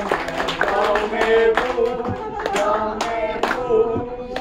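A group of young men and women singing together while clapping their hands in a steady beat, about two claps a second.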